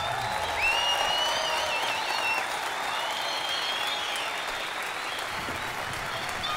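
Concert audience applauding after a rock song, as the band's last low note dies away at the start. High wavering whistles rise over the clapping about a second in and again around three seconds.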